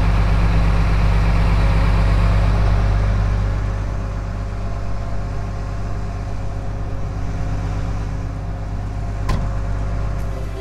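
Combine harvester running while cutting wheat: a steady low drone of engine and threshing machinery. It eases slightly in level about three and a half seconds in, with a single sharp click near the end.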